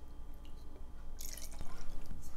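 Water poured from a bottle through a metal measuring cup into a plastic blender cup of soaked nuts and seeds, trickling and dripping. A brief, louder rush comes just past halfway.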